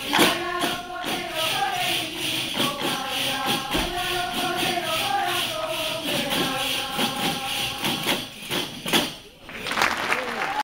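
A folk choir singing a Leonese corrido together over a steady beat on panderetas, round frame drums with jingles. Singing and drumming break off briefly near the end.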